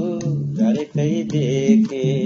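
A man singing a slow Nepali folk melody, drawing out long bending notes, over an instrument that repeats a pattern of two alternating low notes.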